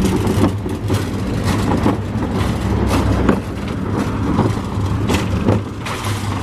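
Plastic-and-metal shopping cart with a child seat rolling along a concrete sidewalk: a steady rumble of the wheels with frequent rattling clicks.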